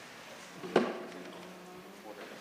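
A single sharp knock about three-quarters of a second in, with a short ring after it, over a faint steady hum.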